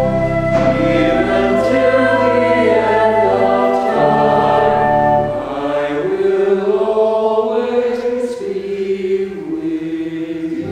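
Small church choir singing with organ accompaniment. The low organ notes drop out a little past halfway, leaving the voices over lighter accompaniment.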